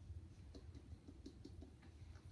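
Near silence: low steady room hum with a few faint soft ticks and taps.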